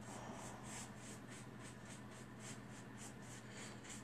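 Paintbrush dry-brushing chalk paint over cardstock leaf cutouts on a plywood board: fast, faint, scratchy back-and-forth strokes, about five a second.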